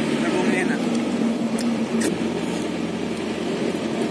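Steady road, engine and wind noise of a moving pickup truck, heard from its open bed, with a low hum throughout and a brief click about two seconds in.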